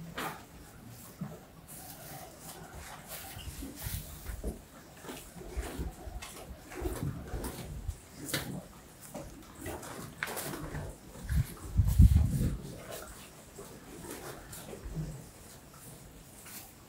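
Beef cattle in a straw-bedded pen making irregular animal sounds and moving about, with a louder, low sound about twelve seconds in.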